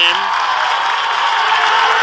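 Ballpark crowd noise: a steady hubbub of spectators in the stands.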